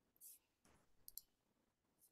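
Near silence: room tone with a few faint clicks, two sharp ones in quick succession about a second in.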